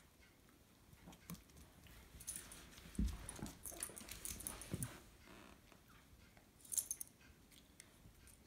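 Two small dogs, a Yorkie and a Shih Tzu-cross puppy, play-wrestling on a wooden floor: faint scuffling and claw taps, with a soft thump about three seconds in and another a little later.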